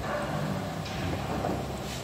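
Water rushing and hissing steadily through a gas central-heating boiler's circuit as its pressure builds. A brighter hiss joins just under a second in.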